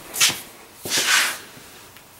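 Two brief rustling, scraping handling sounds, the second longer, as hand tools are moved and picked up over the workbench.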